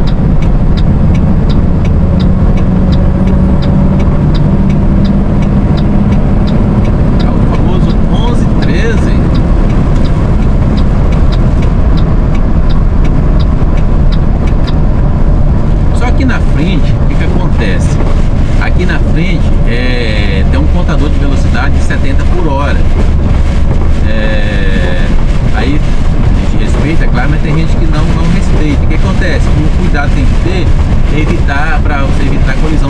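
Steady in-cab drone of a Mercedes-Benz Atego 3030 truck driving at highway speed on a wet road, engine and tyre noise running together without a break.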